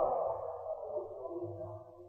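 Reverberant echo tail of a chanted Quran recitation voice dying away after a phrase ends, the lingering tones slowly fading and cutting to silence at the end.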